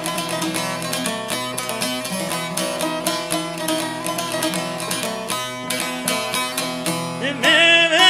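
A long-necked, bowl-backed lute played with fast picked notes, opening an Albanian folk song. A man's voice starts singing over it about seven seconds in.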